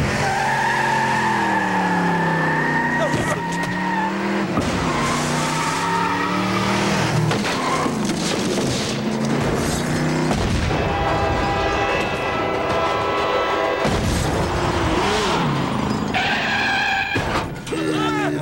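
Cartoon sound effects of a speeding taxi: its engine revving and tires squealing, with pitch rising and falling, over music.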